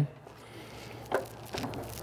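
Quiet handling of a fuel line's quick-connect fitting on a Vespa scooter's fuel pump as it is tugged to check that it is locked, with a short click about a second in and a fainter one just after.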